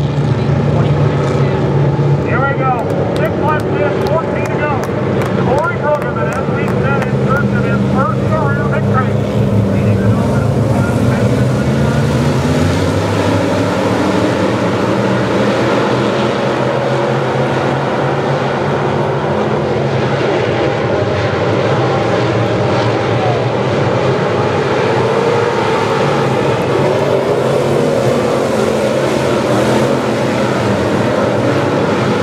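A pack of dirt-track modified race cars running laps, their engines blending in a loud, steady drone.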